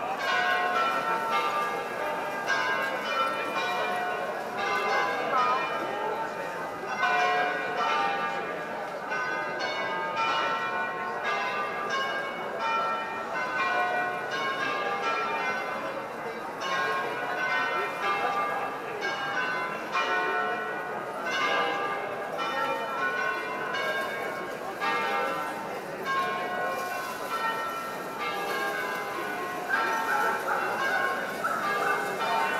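Church bells ringing a continuous peal, several bells of different pitches struck in quick succession, rung for a feast-day procession.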